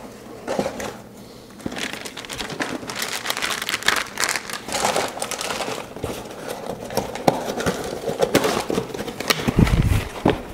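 Plastic packaging crinkling and crackling as it is handled and packed back into a cardboard box, with a dull thump near the end.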